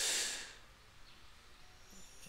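A man's short breath out, a sigh-like exhale lasting about half a second at the start, then quiet room tone.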